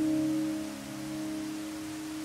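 A held piano chord ringing and slowly fading, over a faint, even rush of water.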